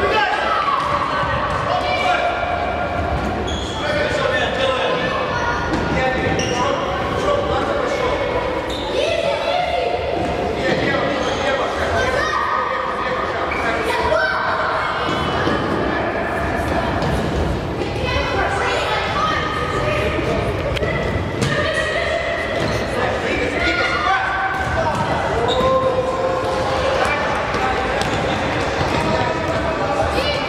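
Youth futsal game in a large echoing sports hall: children and coaches shouting almost without a break, over the thuds of the ball being kicked and bouncing on the court.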